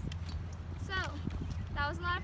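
Metal lanyard clips on a climbing harness clicking and clinking as they are handled and clipped together.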